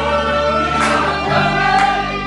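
Live rock band playing: a woman sings long held notes over bass and electric guitars, with a drum hit about once a second.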